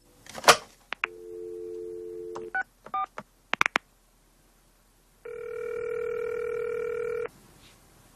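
Telephone call being placed: a clack near the start, a steady dial tone, then two short keypad tones as the two-digit directory-enquiries number 12 is dialled, followed by a few clicks. After a pause of about a second and a half, a ringing tone sounds for about two seconds as the line rings at the other end.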